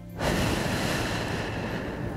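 A long breath blown across a headset microphone: a sudden rush of noise that starts just after the beginning and slowly fades away. Soft background music runs underneath.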